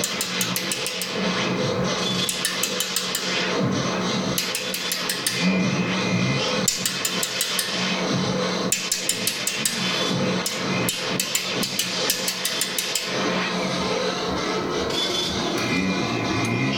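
Experimental electronic noise music: a dense, looping texture of feedback with a steady low drone, broken by recurring bursts of rapid high clicks, from a groovebox played through delay and echo effects.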